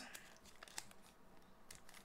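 Near silence, with faint crinkling of a hockey card pack's wrapper being handled, a little livelier in the first second and again near the end.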